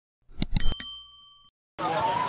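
Subscribe-button sound effect: a few quick clicks, then a bright bell ding that rings for about a second before fading. Crowd noise and voices come in near the end.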